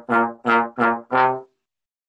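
Trombone playing short, separated tongued notes in eighth notes on a C scale, as a tonguing exercise, about three notes a second. The last note ends about one and a half seconds in.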